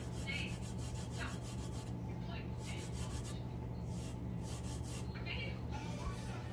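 A gloved fingertip rubbing quickly back and forth over the glitter coating of a tumbler, a run of rapid scratchy strokes with brief pauses, burnishing the loose glitter flat.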